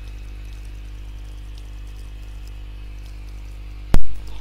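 Steady low electrical hum with faint hiss from the recording setup, unchanging throughout. A single sharp click sounds just before the end.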